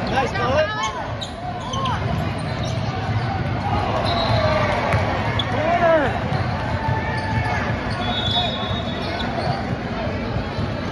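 Youth basketball game in a large gym: a ball dribbling on the hardwood court and short squeaks of sneakers, under spectators' voices.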